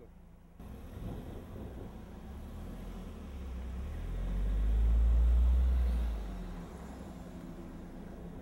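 A car passing close by: a low rumble that builds, is loudest about five seconds in, then dies away.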